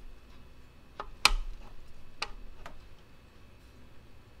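Powder-coated aluminum radiator shroud being pressed down and seated over the radiator, giving four light clicks and knocks, the loudest just over a second in.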